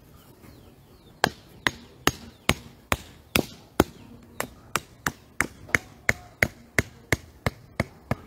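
Hammer blows on the corner board of a wooden garden-bed frame, starting about a second in at two or three strikes a second. A run of heavier blows is followed by a brief pause, then a quicker run of lighter ones.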